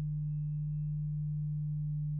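Steady low electrical hum, one constant low tone with faint higher overtones.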